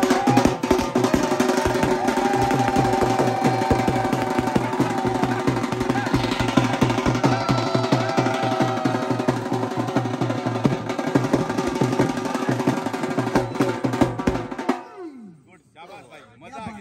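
Dhol drummers playing a fast, steady beat on a large bass drum and smaller drums beaten with sticks, stopping abruptly near the end.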